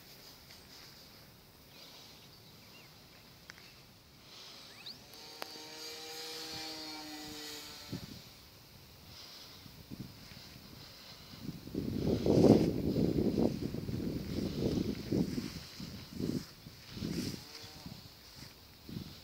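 Wind gusting on the microphone: a loud, irregular rumble from about twelve seconds in that comes and goes in gusts. A few seconds earlier, a steady hum of several tones with a faint rising whine sounds for about three seconds.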